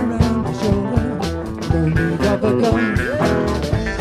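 Live band playing: guitars over a steady drum beat, with a lead line that slides up in pitch about three seconds in.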